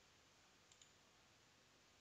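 Near silence, with two faint computer-mouse clicks in quick succession a little under a second in.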